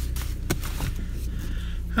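A few sharp knocks and some rustling as things are handled close to the microphone inside a car, over a steady low hum.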